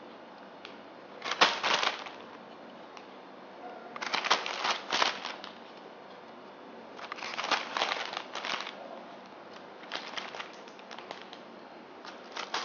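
Clear printed plastic gift bag crinkling in four short bursts as chocolate truffles are put into it and the bag is handled.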